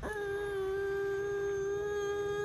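A toddler's long whining hum, held steadily on one pitch with closed lips, in sulky refusal.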